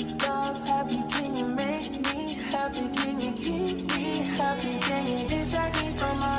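Background music with a steady beat, about one stroke a second, over sustained melodic lines; a deep bass line comes in near the end.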